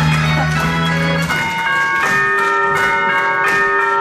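Loud music of a stage musical's closing number: long held chords over a steady beat.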